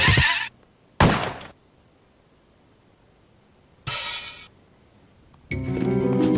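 Cartoon soundtrack: the music cuts off, followed by a single thud about a second in and a short hiss about four seconds in, with long quiet gaps between them. Music starts again near the end.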